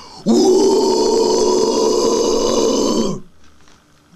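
A man's guttural death metal growl, unaccompanied, held steadily for about three seconds and cut off abruptly.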